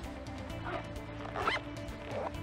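Background music with steady held notes, and a backpack zipper pulled briefly about one and a half seconds in.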